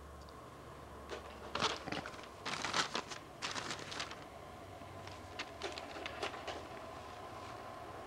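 Steady low room hum, with irregular clusters of short clicks and rustles in the first three quarters.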